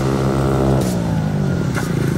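Small moped scooter engines running as the scooters ride up, the pitch falling about halfway through as they ease off and slow down.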